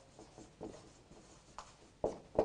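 Marker pen writing on a whiteboard: a few faint, brief strokes.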